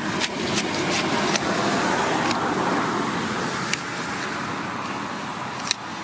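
Steel blade of a hand weeding tool cut from a plough disc, chopping and scraping into turf and roots to dig out a grass clump, with a few sharp clicks. Behind it, a rushing noise builds over the first few seconds and then slowly fades.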